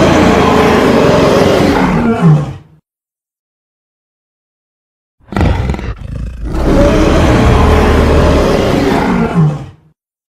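Giant-ape monster roar sound effect, mixed from film creature roars, heard twice: one long roar, a silence of about two seconds, then a short burst and a second long roar like the first.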